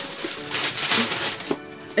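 Paper and cardboard rustling as a gift box is handled, a rough crackling noise lasting about a second, over faint background music.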